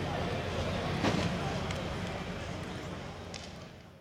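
Outdoor background voices over a low steady hum, with a couple of sharp knocks, fading out near the end.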